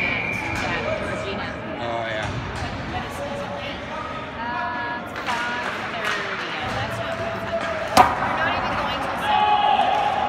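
Ice hockey game in an arena, with voices in the stands throughout. About eight seconds in comes a single sharp crack of a hit during play on the ice.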